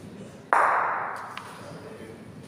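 Bocce balls colliding: one sharp clack about half a second in that rings on for about a second, followed by a faint click.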